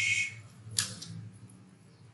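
A computer keyboard being typed on: a short hiss right at the start, then a single sharp key click a little under a second in, over a low steady hum.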